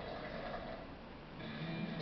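Music from a television's cricket broadcast, playing through the TV set's speaker across the room.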